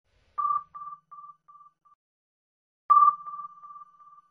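Sonar-style ping sound effect: a high electronic ping followed by fading echo repeats, sounding twice about two and a half seconds apart.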